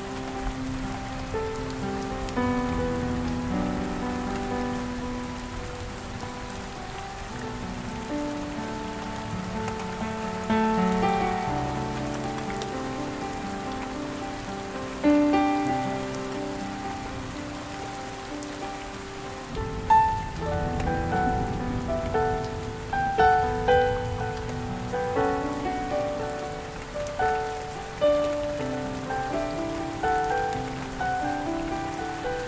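Soft solo piano playing a slow, gentle melody over a steady hiss of rain. The piano plays more notes, and higher ones, in the second half.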